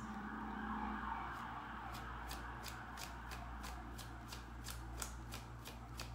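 A deck of tarot cards being shuffled by hand: a steady papery rustle of cards sliding against each other, with light quick ticks about four a second from about a second and a half in.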